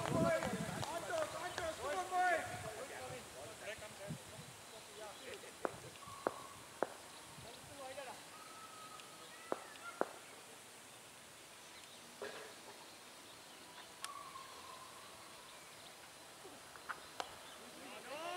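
Cricket players' voices calling across the field in the first few seconds, then quiet open-air ambience broken by scattered sharp clicks and knocks, with a pair of knocks near the end.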